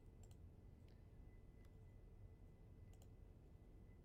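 Near silence: room tone with a few faint computer mouse clicks, a couple in the first half-second and two close together about three seconds in.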